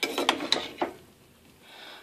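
Cooked rice being scooped from a pot onto egg rolls in a frying pan: a quick cluster of utensil scrapes and knocks against the cookware in the first second, with a brief metallic ring.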